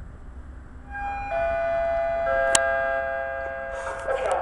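Railway station public-address chime over the platform loudspeakers: three descending notes come in about a second apart and ring on together before fading, the signal that an announcement follows. A single sharp click sounds about two and a half seconds in.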